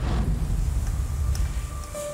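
A deep, low rumbling whoosh of an edit transition sound effect, with faint held music tones over it. The rumble fades just before the end.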